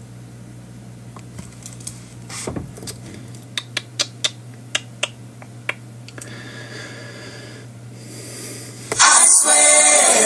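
A faint steady low hum with a run of light, sharp taps and clicks, several a second for a few seconds, then a pop song starts loudly near the end.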